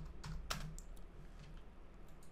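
Typing on a computer keyboard: a run of faint, irregular key clicks, the sharpest about half a second in.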